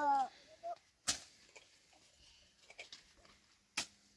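A child's voice trails off at the very start, then two sharp knocks come about three seconds apart, with faint scattered ticks between them.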